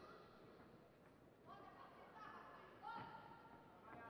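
Near silence, with faint distant voices calling out from about a second and a half in.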